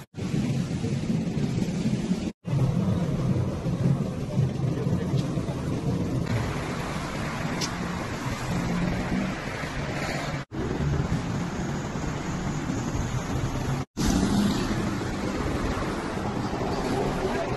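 Street and traffic noise from phone recordings, with vehicle engines rumbling under a steady outdoor hiss. It drops out for an instant three times where one clip cuts to the next.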